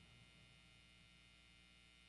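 Near silence: a faint, steady low hum.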